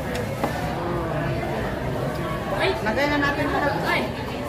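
People talking over the general chatter of a busy restaurant dining room, with a voice coming through more clearly in the last second and a half.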